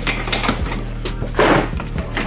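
Background music with a steady bass line, and a brief scraping noise about one and a half seconds in from packing tape being cut on a cardboard box.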